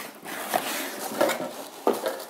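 Cardboard mailer box being opened by hand, the lid flipped back with scraping and rustling of cardboard and tissue paper, and a sharp knock near the end.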